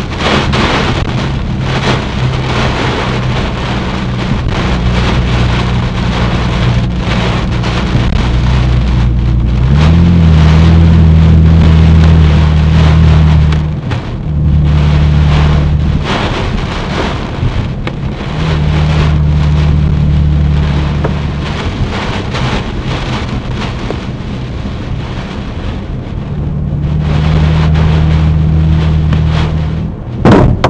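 Heavy rain and strong storm wind battering a moving car, heard from inside the cabin through the dashcam: a dense rush of rain hitting the car, with a deep low rumble that swells and fades several times.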